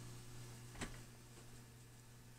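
Near silence: a faint steady low hum, with one soft click a little under a second in.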